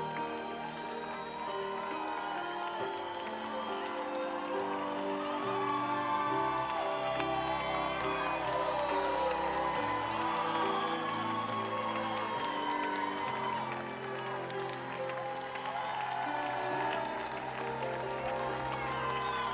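Music of long, held chords that shift every few seconds, playing while the band is away from their instruments, with a concert crowd applauding and cheering under it.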